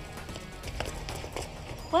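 A few quick footsteps on pavement, with background music underneath.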